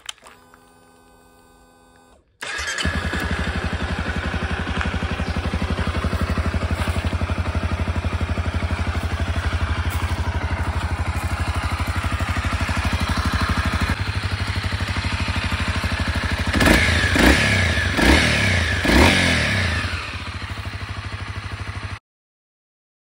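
Honda CRF250L 250 cc single-cylinder four-stroke engine, freshly swapped in, starting after a brief steady hum and settling into a fast, even idle. Near the end it is revved a few times in short blips and then drops back to idle. It is running okay, with its oxygen sensor relocated to the exhaust.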